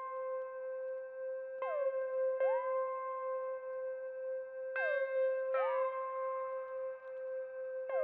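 Synth arp playing the same single high note, C6, on its own: a steady held tone that is re-struck in pairs of attacks under a second apart, about every three seconds, the upper part of the sound sliding into pitch at each new attack.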